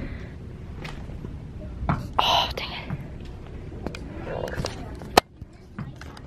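Quiet whispered speech over store background noise, with a sharp click about five seconds in.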